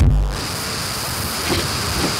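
A bass-heavy electronic beat cuts off about a third of a second in, leaving a steady hiss with a faint high whine.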